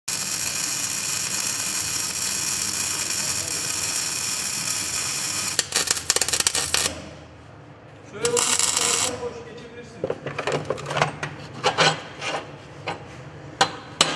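Stick arc welding: an electrode arc burning on steel plate with a steady, loud crackling hiss for about five and a half seconds, cutting off abruptly. It is followed by a brief noisy burst and then a run of sharp knocks and clicks.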